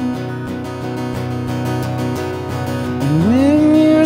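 Live acoustic band music: strummed acoustic guitar and Yamaha CP5 stage piano holding chords between vocal lines. About three seconds in, a voice slides up into a long held note.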